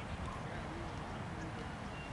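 Faint, distant voices of people talking on an open field over a steady low outdoor rumble; no bat or ball strike is heard.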